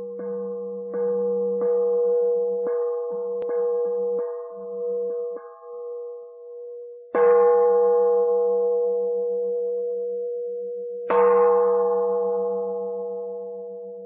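A single-pitched bell tone struck lightly over and over through the first five seconds or so. Then come two louder strikes about four seconds apart, each ringing out and slowly fading.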